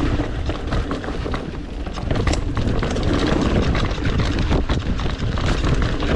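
Mountain bike riding down a dry, dusty dirt trail: tyres rumbling over the ground, with frequent clicks and clatters from the bike over rough terrain.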